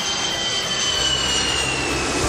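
Jet airliner engine sound effect: a steady rush of engine noise with a high whine that falls slowly in pitch, as of a plane passing. A low hum joins about halfway through.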